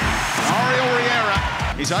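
Background music under a man's voice with one long drawn-out call near the middle, in a televised football highlights mix.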